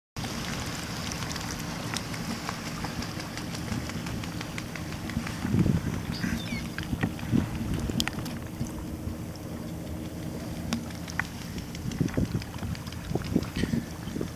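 Wind rumbling on the microphone over water lapping and splashing against a sea kayak's hull, with scattered small clicks and a few louder knocks of water.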